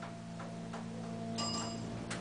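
Hydraulic elevator pump motor running with a low, steady hum as the car rises, with a few faint clicks. About one and a half seconds in, a short high chime rings for about half a second as the car reaches the next floor.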